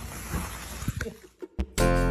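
Water from a garden hose running into a plastic tub, a steady splashing wash that cuts off about a second and a half in. Music starts just before the end.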